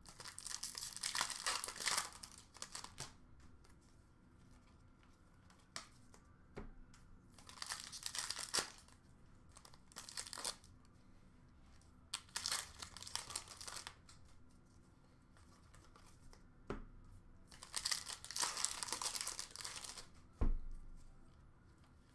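Upper Deck hockey card pack wrappers being torn open and crinkled, in four bursts of a second or two each with quiet handling between. A single dull knock comes near the end.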